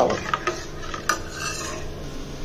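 Metal ladle stirring a thick buttermilk curry in a stainless steel pot, with a few light clinks of metal against the pot, the sharpest about a second in.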